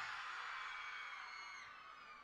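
The echo of a man's shout over a PA system dying away, with a few faint high whoops from an audience.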